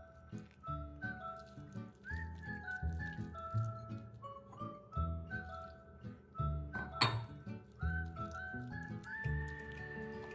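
Background music with a steady bass beat and a light melody. About seven seconds in comes one sharp clink of glass, a glass jug knocking the glass mixing bowl during mixing.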